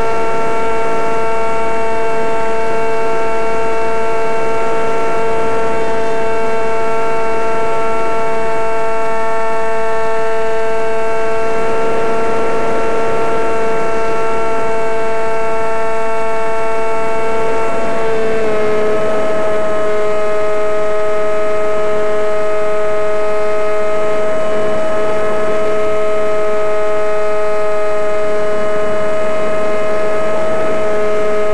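Scratchbuilt R/C airplane's motor and propeller, picked up by the onboard camera: a steady high whine with several overtones over a rush of wind noise, dropping slightly in pitch about 18 seconds in as the throttle changes.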